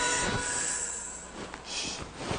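Sustained, screechy tones of a dramatic music sting fading out, with a brief hiss-like noise near the end.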